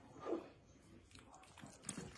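Quiet kitchen handling noise, with a short soft wet click near the end as sauced meatballs start to slide from a mixing bowl into a metal baking pan.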